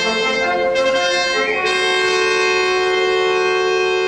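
Symphonic wind band playing, brass to the fore: a moving phrase of sustained chords that settles, about one and a half seconds in, onto one long held chord.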